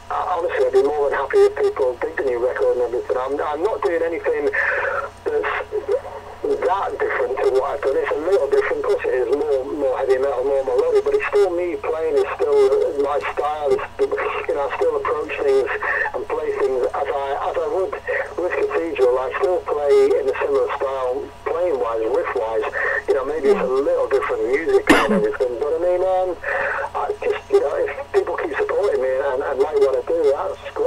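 A man talking without a break, his voice thin and narrow as if heard over a phone line.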